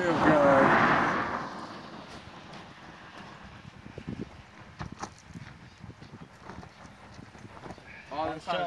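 A person's voice briefly at the start, then quiet outdoor ambience with scattered faint taps and knocks.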